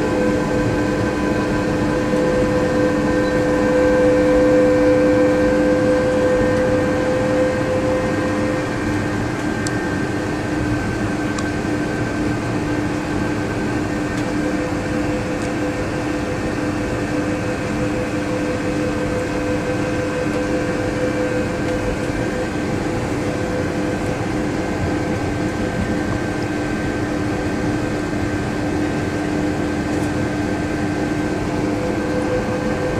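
Von Roll Mk III monorail car running at steady speed, heard from inside the car: a steady whine of several fixed tones over a constant rumble of running gear.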